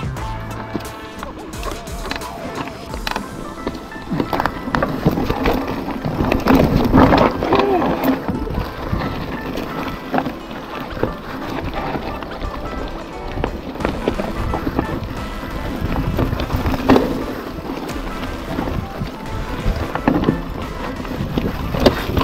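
Background music over the rattle and rolling noise of a mountain bike riding down a rough, rocky dirt trail, with frequent knocks as the bike hits bumps.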